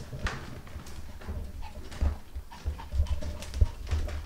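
Small dogs' claws clicking irregularly on a hardwood floor as they trot along, with scattered low thumps underneath.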